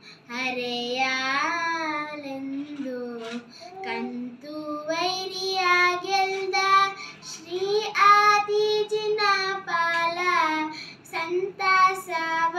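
A young girl singing a Kannada Jain devotional song (bhajane) in a single voice, with long drawn-out notes that waver and glide between pitches.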